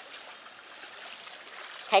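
Small waves lapping against the rocks of a seawall: a faint, steady wash of water.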